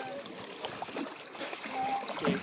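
Shallow lake water sloshing and splashing around a person's legs as she wades, with small irregular splashes and faint voices in the background.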